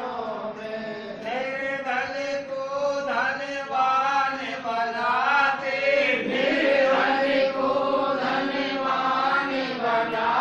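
Hindu devotional bhajan sung in a chant-like melody, with long held notes that bend up and down in pitch.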